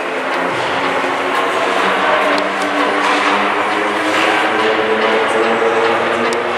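Indoor ice hockey game in play: a steady wash of skates scraping the ice and rink noise, with many overlapping voices of players and spectators calling out and a few sharp stick clicks.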